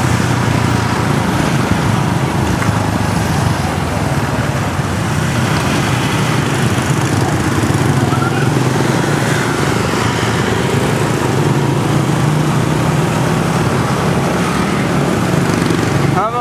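Small motorbike engine running steadily at low riding speed in dense street traffic, a constant low engine hum under road and traffic noise.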